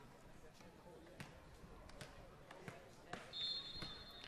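Faint stadium background with a few soft knocks, then about three seconds in a referee's whistle blows once, steady and high, for just under a second: the signal that the penalty kick may be taken.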